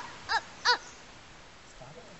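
A crow cawing twice in quick succession, two short calls about a third of a second apart, the last of an evenly spaced series.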